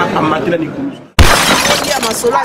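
A man speaking, fading out to a brief silence about a second in, then a sudden loud burst of noise, followed by more speech.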